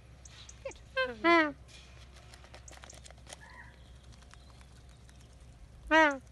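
Magpie goose giving a short honk about a second in and another of the same shape at the very end, with faint scattered clicks between.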